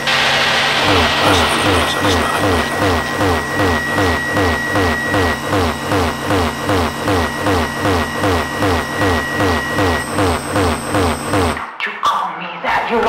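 Rhythmic noise (industrial electronic) music: a distorted low beat repeats about two and a half times a second, with falling tones over each beat and a steady high whine that stops about ten seconds in. The track cuts off just before the end.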